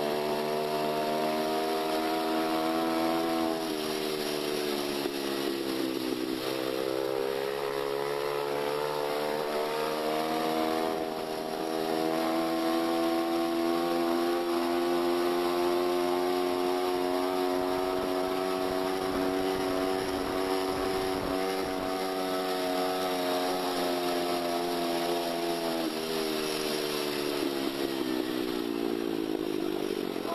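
Small motorcycle engine running under way, a buzzy note that falls about four seconds in and climbs back, holds steady through the middle, and drops off over the last few seconds as the bike slows.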